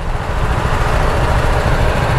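Motorcycle riding noise on a BMW G310R: a steady rush of wind on the microphone, with the engine and surrounding traffic running underneath.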